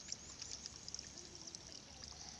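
Faint trickling and sloshing of shallow muddy water as a hoe works in it.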